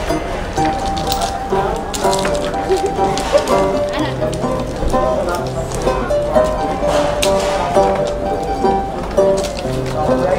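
A plucked string instrument, guitar-like, playing a melody with lower bass notes joining about four seconds in.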